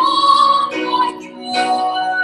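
A woman singing a slow worship song in long held notes, over instrumental accompaniment. She holds a high note, then a shorter one, then moves to a lower held note near the end.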